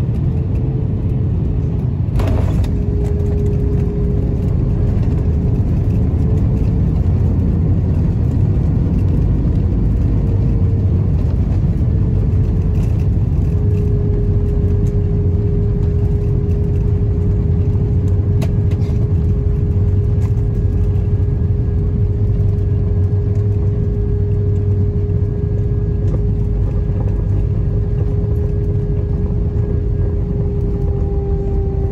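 Inside the cabin of an Airbus A320-family jet rolling out on the runway after landing: a steady deep rumble from the wheels and engines, with a steady engine whine over it. A single sharp click comes about two seconds in.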